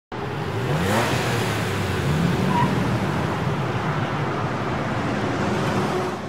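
Car engine accelerating over a dense rush of engine and road noise that starts abruptly; its pitch rises about a second in and again about two seconds in.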